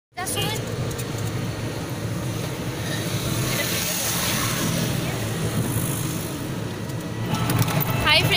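Steady low rumble and wind noise of an open-sided motor vehicle on the move.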